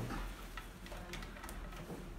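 Several light, scattered clicks and taps, about four in two seconds, as power cables and plugs are handled at a wall socket and power strip.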